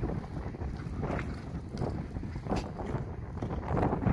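Wind buffeting the microphone in a steady low rumble, with a few faint thuds of a horse's hooves on turf as it canters past.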